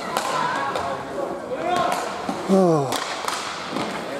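Inline hockey play on a plastic rink floor: several sharp clacks of sticks and puck, and players shouting, with one loud falling call of a name about two and a half seconds in, all echoing in a large hall.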